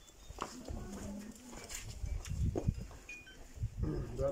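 Footsteps on a paved alley: a few irregular knocks over a low, uneven rumble, with brief bits of voices.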